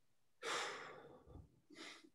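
A person's long audible sigh, a breath out that fades over about a second, followed near the end by a short, fainter breath, as the speaker grows emotional.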